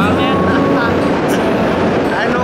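Steady wind rushing over the camera microphone during a tandem parachute descent under an open canopy, with voices talking through it.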